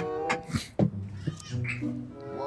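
Background music from the comedy sketch: held, steady notes, then a low bass line.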